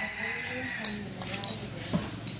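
Portable gas stove burner hissing steadily under a small frying pan, with a couple of light clinks of dishes and faint voices in the background.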